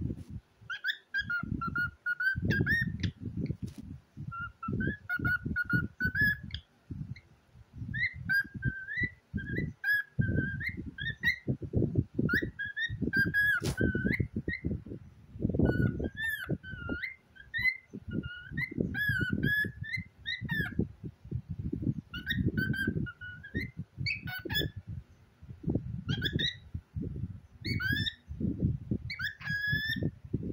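Lutino cockatiel chattering in short warbling whistled phrases, one after another with brief gaps, over a dense patter of low rustles and knocks.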